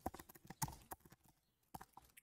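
Faint computer-keyboard keystrokes typing a price: a quick run of taps, a short pause, then two more taps near the end.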